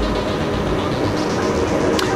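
Steady background noise of a busy convention hall, with music playing underneath.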